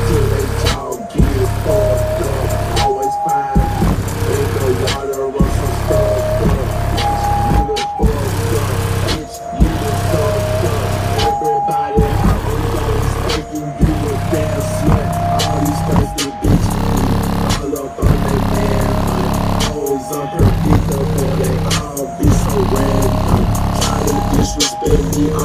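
Hip-hop track played loud through a car audio system for a bass test: a Re Audio SEX v2 subwoofer (750 W RMS) driven by a Forx 6000.1 amplifier, heard from outside at the closed trunk. A heavy bass beat under a repeating melody and rap vocals, with the mix dropping out briefly about every two seconds.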